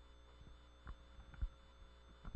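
Very quiet studio room tone with a low steady hum and two faint soft thumps, about one and one and a half seconds in.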